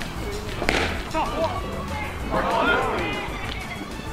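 A baseball bat hitting a pitched ball, one sharp hit less than a second in, followed by shouting voices, over background music.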